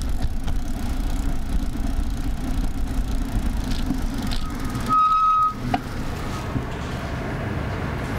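A car driving slowly through a turn, its engine and road noise a steady low rumble heard from inside the cabin. About five seconds in there is a short steady beep, then a click.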